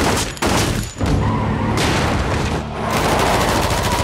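Staged film gunfight: rapid, sustained gunfire, many shots in quick succession with a brief lull about a second in.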